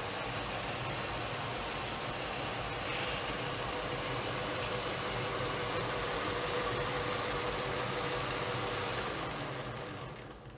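Model GP9 diesel locomotive's onboard sound system playing a steady diesel-engine idle, with a faint tone running through it. It fades away near the end.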